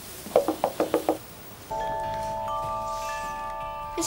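A quick run of short notes, then bell-like chimes ringing a held chord that builds as higher notes join in.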